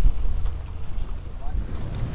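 Gusty wind buffeting the microphone: an uneven, rumbling low roar that swells and dips.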